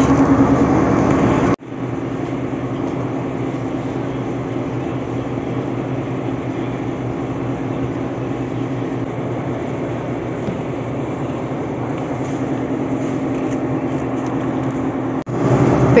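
Steady background din of a large wholesale supermarket, with a low, even hum from the refrigerated display cases. The sound cuts off abruptly about a second and a half in and switches to a slightly different, even background, then cuts back again near the end.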